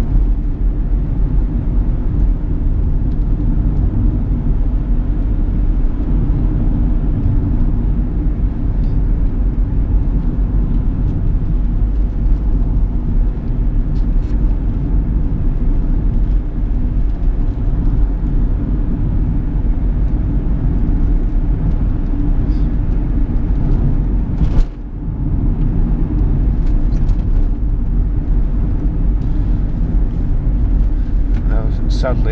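Cabin noise of a Chevrolet Captiva 2.0 VCDi four-cylinder turbodiesel on the move: a steady engine drone with tyre and road noise on a wet road. The level dips briefly about 25 seconds in.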